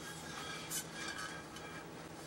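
Faint handling noise as a glass CRT picture tube is lowered neck-down into a paper towel roll: soft rustling and scraping of paper and glass, with a brief louder rustle a little under a second in.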